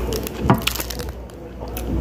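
Close-up chewing and wet mouth sounds of a person eating a soft Gushers fruit snack, with a short sharp mouth sound about half a second in, over a steady low hum.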